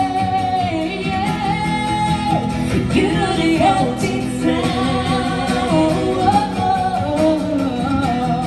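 Live acoustic performance: two voices singing a held note and then bending vocal runs over an acoustic guitar.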